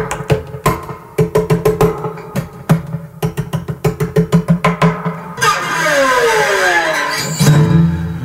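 Acoustic 12-string guitar played alone: quick picked notes for about five seconds, then a long falling sweep in pitch, and a chord near the end.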